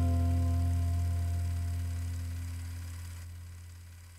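The song's final chord ringing out and slowly fading away, a deep bass note the strongest part under fainter held higher tones.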